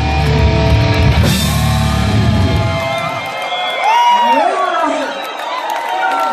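Live heavy metal band, with distorted guitars, bass and drums, playing the final bars of a song and stopping about three seconds in. Shouting voices and crowd noise follow.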